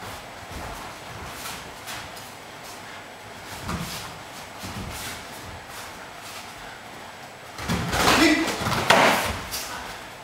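Nippon kempo sparring: scattered light thuds of footwork and strikes, then from about eight seconds in a loud burst of blows on protective gear mixed with shouts.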